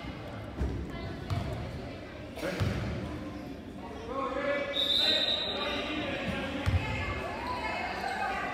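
A basketball bouncing a few separate times on a hardwood gym floor, under echoing voices of players and spectators.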